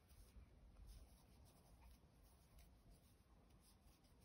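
Near silence, with faint soft rubbing and small scattered ticks from a metal crochet hook drawing yarn through stitches.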